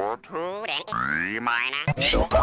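Cartoon character voice audio run through pitch-shifting editing effects, bending and sliding up and down in pitch, with a long rising glide about a second in and a wavering tone just after it.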